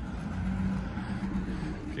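Steady low hum of a motor vehicle engine running.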